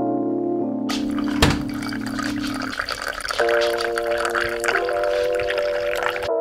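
Hot coffee pouring from a glass pour-over carafe into a ceramic mug, the splashing stream starting about a second in, with a single knock just after it starts. Background music with sustained keyboard-like chords plays throughout.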